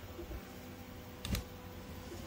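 Faint steady hum of 3D printers running, with a thin whine in it, and a single sharp click about a second and a quarter in.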